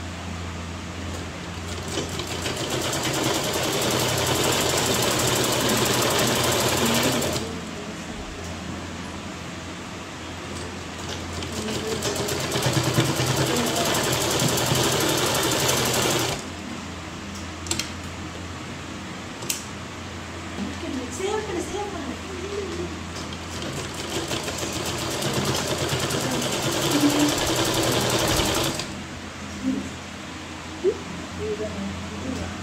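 Electric sewing machine running in three runs of several seconds each, top-stitching along the edge of a fabric bag: one starting about two seconds in, one about eleven seconds in, and one near the end. Between the runs it stops, with a few sharp clicks as the fabric is repositioned.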